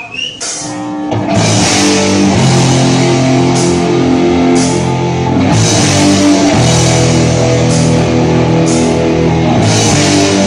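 Punk metal band playing live, with distorted electric guitar and drum kit. After a few sharp hits, the full band comes in loud about a second in and plays on steadily, with cymbal crashes marking the beat.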